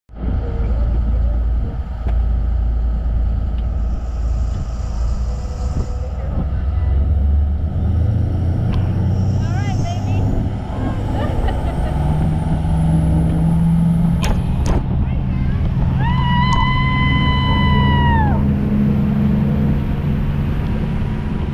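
Parasail boat's engine running under load, its hum stepping up in pitch several times as the boat speeds up and the riders lift off the deck. A few sharp clicks come about two-thirds of the way in, and a held high-pitched tone lasts about two seconds near the end.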